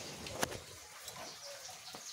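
Pliers gripping and twisting a tight threaded fitting on a water pump's outlet: a sharp click about half a second in and a lighter one near the end, over faint background noise.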